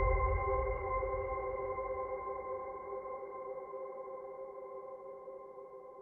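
Background music: a held, steady chord that slowly fades out.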